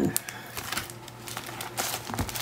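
Clear plastic packaging of craft supplies crinkling and rustling as the packs are handled and shuffled, in irregular crackles.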